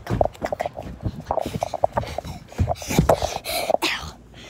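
A handheld phone being jostled and handled as it is carried quickly, making a string of irregular bumps, knocks and rustles, with breathy huffs.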